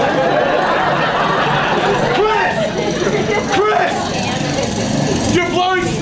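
A snowblower engine running steadily, played as a stage sound effect through the theatre's speakers. A man shouts over it a couple of times and again near the end.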